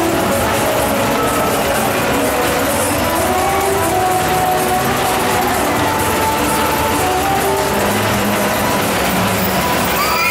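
Loud fairground ride music over the steady noise of a spinning mouse coaster car running along its steel track.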